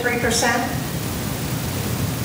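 Steady, even hiss of background noise with no tones or strokes in it, following the end of a short spoken question.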